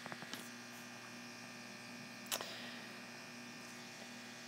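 Steady, faint electrical hum, with a few faint ticks just after the start and one short noise a little over two seconds in.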